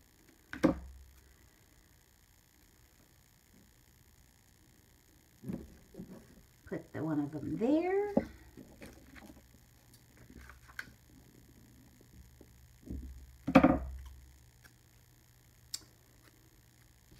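Scissors and a sticker strip being handled on a table: two sharp knocks, one about half a second in and one near the end, with a few quieter scrapes between. Midway comes a short voice-like sound that rises and then falls in pitch.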